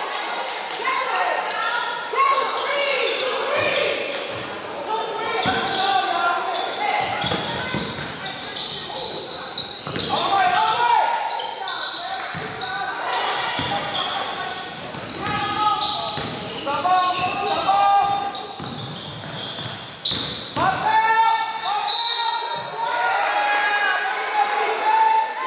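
Basketball game sounds in an echoing gym: players, benches and spectators calling out and talking over one another, with a basketball bouncing on the hardwood floor and scattered sharp knocks.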